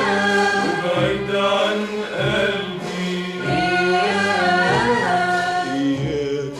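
Classic Egyptian Arabic song orchestra playing a melodic passage: an ornamented line of sliding, wavering pitches over a held low note.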